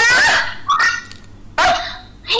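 Two short, loud, bark-like yelps: one at the start and a shorter one about a second and a half later.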